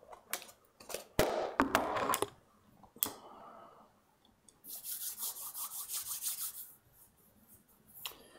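Objects being handled on a workbench: scattered clicks and knocks, then, about halfway through, roughly two seconds of quick, regular rustling and scraping.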